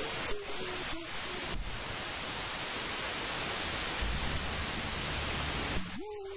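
A steady hiss of static-like noise spread evenly from low to high pitch, with faint traces of a voice underneath in the first second or so.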